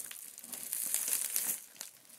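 Crinkling and rustling of a fabric shipping bag being handled: a run of small irregular crackles that dies away near the end.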